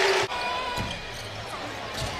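Basketball bouncing on a hardwood court during live play, a few short knocks over a steady hum of arena noise.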